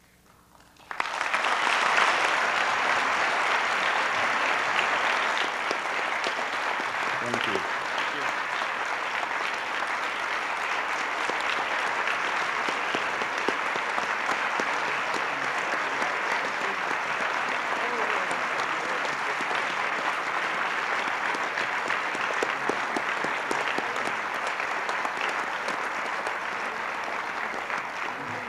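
Audience applauding: a dense, steady clapping that starts suddenly about a second in, is loudest at first and eases slightly toward the end.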